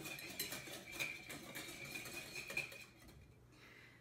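Wire whisk beating miso dressing in a glass bowl, its tines clicking rapidly against the glass; the whisking stops about three seconds in.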